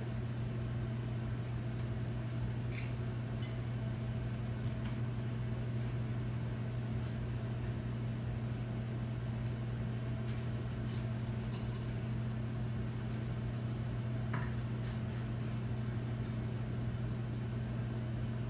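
A steady low electrical hum, with a few faint clicks of a kitchen knife cutting a fish fillet against a cutting board.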